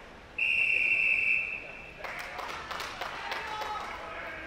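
A starting referee's whistle blows one long, steady blast, the signal for swimmers to step up onto the starting blocks. It is followed by scattered knocks, claps and voices.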